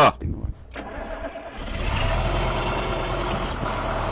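Farm tractor engine running. The sound comes up about one and a half seconds in and then holds steady.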